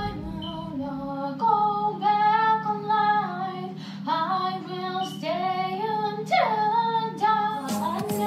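A teenage girl singing a slow self-written song in English, drawing out long held notes.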